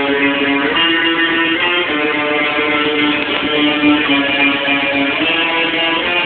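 Guitar played with a pick: sustained, ringing notes and chords that change every second or so.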